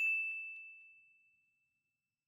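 A single high, bright chime, the ding sound effect of a subscribe-button animation, ringing out and fading away within about a second.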